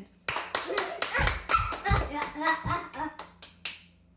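A few people clapping their hands in quick, uneven applause for about three and a half seconds, with laughing voices mixed in; it dies away near the end.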